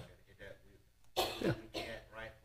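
A person coughing twice in quick succession, about a second in, over faint talk in the room.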